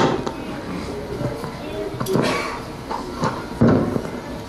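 Low, indistinct voices in a room with the knocks and rustles of a handheld microphone being passed over, and a louder bump near the end.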